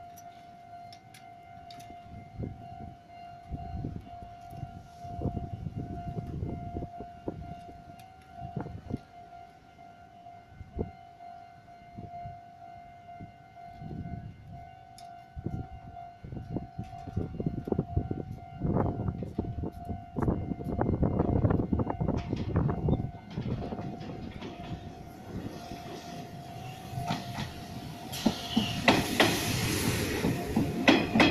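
Railway level-crossing warning bell ringing steadily in a pulsing tone. A train's rumble builds from about halfway through until an Izuhakone Railway electric train passes close by, its wheels loudest near the end.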